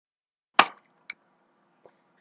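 Two clicks from working the computer: a sharp loud click about half a second in, then a fainter one half a second later, with a barely audible tick near the end.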